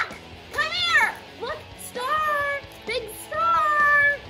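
A woman singing in a high, loud voice: short swooping phrases, then a long held note near the end.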